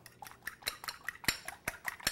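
A fork beating eggs in a bowl, the tines clinking quickly against the bowl about six times a second, starting a moment in.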